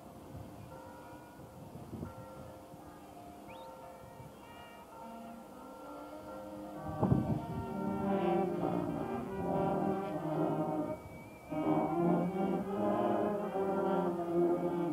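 A brass band with sousaphones playing as it marches. The band is faint at first. After a sharp thump about seven seconds in, it comes in loud, with a brief break near eleven seconds.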